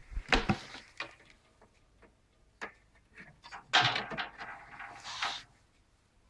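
Mains power cable's plug being handled and pushed into the charging socket of a homemade self-balancing scooter: a few knocks near the start, scattered clicks, then a scraping rub lasting over a second about four seconds in as the plug is seated.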